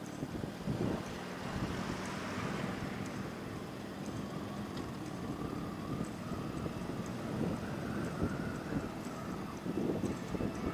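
Motorcycle running steadily at road speed, its engine hum mixed with gusty wind buffeting on the microphone.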